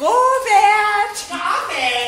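A high-pitched female voice singing: a note held for about a second, then a shorter second phrase.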